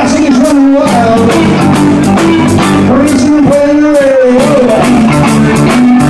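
Live rock and roll band playing loudly with a steady beat: electric guitar, bass guitar and drum kit.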